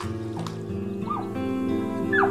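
Background music with long held notes, and over it a couple of short, high squeaky whimper-like calls from a giant panda, about half a second and a second in.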